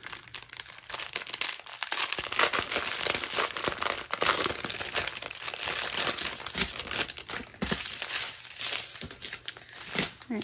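Thin plastic bags holding diamond-painting drills crinkling and crackling as they are handled and pulled apart. The crackle is continuous, with many small clicks, and picks up about a second in.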